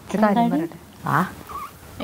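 A woman speaking briefly, then a short squeaky vocal sound about a second in that swoops down in pitch and back up.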